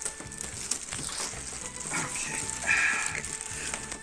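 Cardboard box rustling and scraping, with plastic wrap crinkling, as an aluminium suitcase is slid out of the box by hand.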